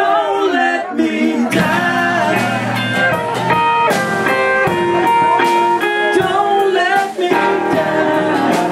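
A live band's acoustic guitar and Gibson Les Paul electric guitar playing together, with singing.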